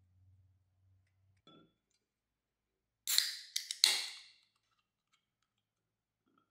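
Aluminium 7 Up soft-drink can opened by its pull tab about three seconds in: sharp cracks of the tab and a short hiss of escaping carbonation, lasting about a second and a half, after a faint knock.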